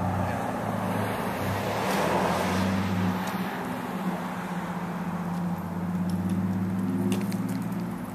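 Road traffic: a motor vehicle's engine running with a steady low hum.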